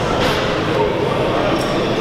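Steady background din of a busy gym, with faint voices in it.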